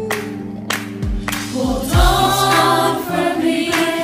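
A choir singing a Christian gospel song over instrumental backing with a steady drum beat. The first stretch is instrumental; the voices come in about two seconds in and the music grows louder.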